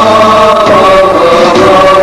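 Voices singing a chant-like melody in long held notes over musical accompaniment.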